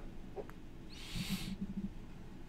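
A short breath about a second in, overlapping a faint, low hummed 'mm' from a man thinking.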